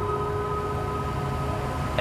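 A steady low hum with a few faint held tones above it.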